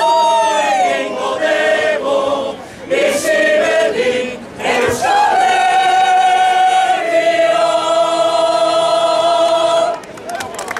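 Choir singing polyphony a cappella, several voices holding notes in harmony. Two brief breaks between phrases come early, then a long held closing chord steps down partway through and stops at the very end.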